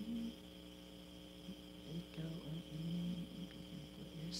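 A man humming a low tune without words: a brief phrase at the start, a pause, then several short phrases from about halfway through. A steady electrical hum with a faint high whine runs underneath.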